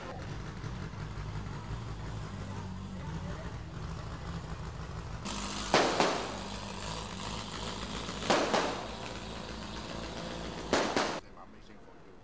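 A steady low engine hum, then from about five seconds in a rougher, louder stretch broken by three pairs of sharp bangs, each pair a fraction of a second apart, which cuts off suddenly near the end.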